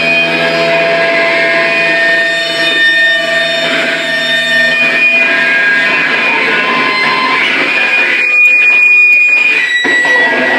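Electric guitar played live through an amplifier: long held notes ringing on and overlapping into a dense sustained wash, with some crackling noise about eight seconds in.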